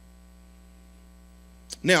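Steady low electrical mains hum, left bare while the speech pauses, then a man's voice saying "Now" near the end.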